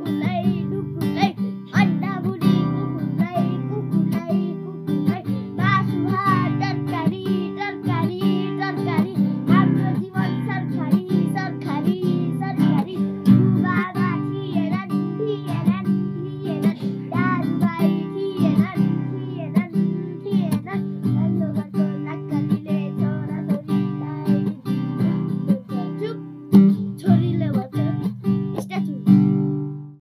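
A young boy singing a song to a strummed acoustic guitar.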